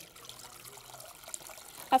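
Water poured from a measuring jug into the clear bowl of a KitchenAid 7-cup food processor, a quiet, steady splashing trickle. The bowl is being filled to rinse it with water and soap between recipe steps.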